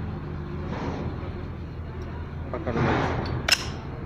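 Gearbox gears and parts being handled on the main shaft during assembly, with one sharp click near the end, over a steady low hum; a voice speaks briefly in the background.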